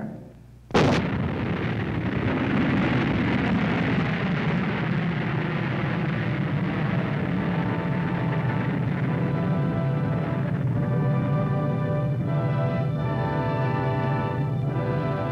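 Nike Hercules missile launch: a sudden blast about a second in as the solid-fuel booster ignites, then a steady rocket rumble that carries on. Music with held notes comes in over it in the second half.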